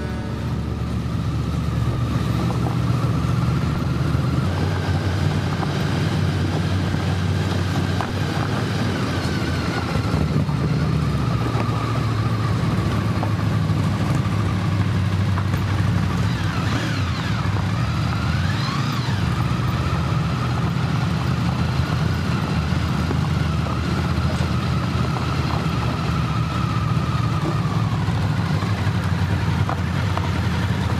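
Motorcycle engine running steadily while riding along a rough village road, with road and wind noise.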